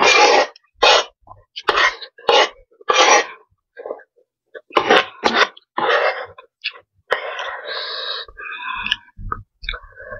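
Close-miked eating sounds: a run of loud, short wet slurps and chewing as noodles are eaten, with a longer, drawn-out slurp near the end.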